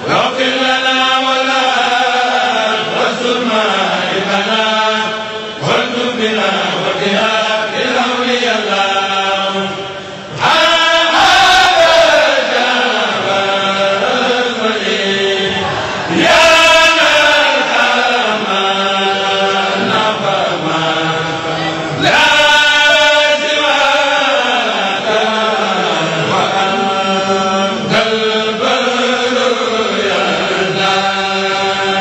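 A Mouride kourel, a choir of men, chants an Arabic khassida in unison. The phrases are long and drawn out, and the voices swell louder as fresh phrases start at about ten, sixteen and twenty-two seconds in.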